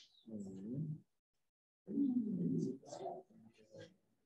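An indistinct, low human voice murmuring in two stretches, a short one and then a longer one, with no clear words.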